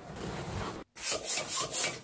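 Inflated Sempertex latex balloons rubbing and squeaking against each other as they are handled, in about four quick rubbing strokes in the second half.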